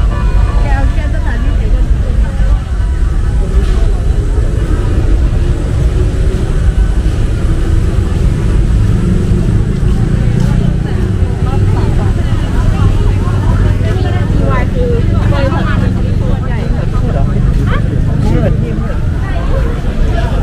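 Chatter of people walking past, over a steady low rumble.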